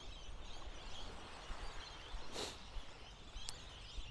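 Quiet beach ambience: a soft steady hiss with a low rumble of wind on a clip-on microphone, and one short rush of breath a little past halfway.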